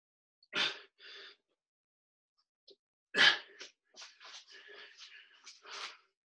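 A man breathing hard from doing push-ups: two sharp exhalations in the first second and a half, a loud gasping breath about three seconds in, then a run of quick panting breaths.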